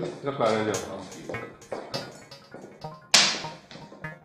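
Film soundtrack: a voice briefly at the start over background music, then a single sharp smack about three seconds in, the loudest sound.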